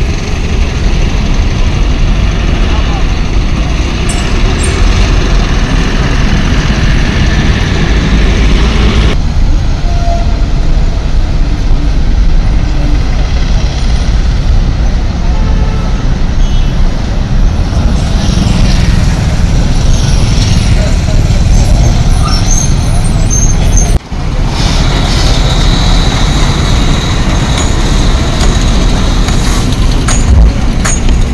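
Heavy trucks and other traffic moving through a highway toll plaza: a loud, steady rumble of diesel engines and road noise, with voices in the background. The sound changes abruptly twice, about a third of the way in and again about four-fifths of the way in.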